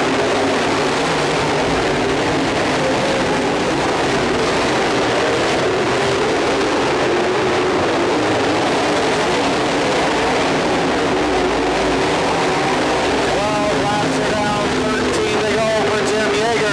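A pack of IMCA dirt modified race cars with V8 engines running hard around a dirt oval. Their engines make a loud, dense, steady sound.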